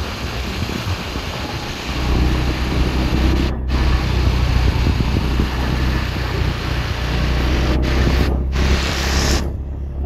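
Wind rushing over the microphone of a rider on a moving motor scooter, with a low engine and road rumble underneath that gets louder about two seconds in. The hiss cuts out briefly several times.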